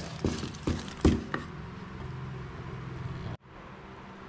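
Wooden spatula stirring and knocking against a plastic container of fish-soaked cotton-ball bait, with several short knocks in the first second and a half, then softer scraping over a faint steady hum. The sound drops away abruptly near the end.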